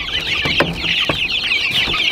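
A large brood of young chicks peeping, many high chirps overlapping continuously. A few light knocks of wood are heard among them.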